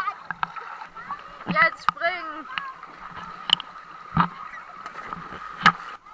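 Swimming-pool sounds picked up by a waterproof action camera: scattered knocks and splashes of water against the camera, with short shouted voices about a second and a half in and a faint steady high tone underneath.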